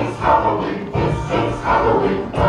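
Music with group singing playing from a television.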